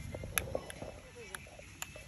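Faint background voices, with a few sharp clicks or taps.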